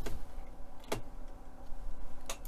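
A light click about a second in as the model's deck panel is handled and turned on a cutting mat, over faint steady room hum.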